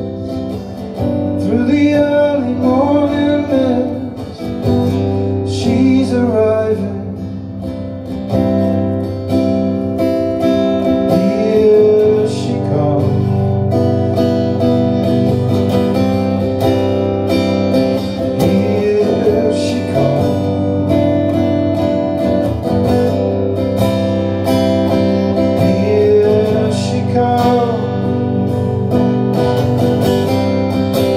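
Acoustic guitar played live, a steady strummed and picked passage of a folk song, amplified through the room's PA.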